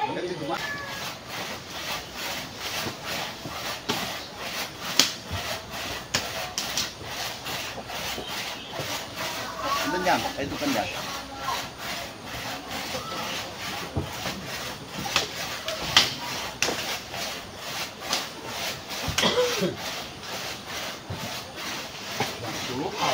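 Handsaw cutting through wood in a steady run of quick back-and-forth strokes.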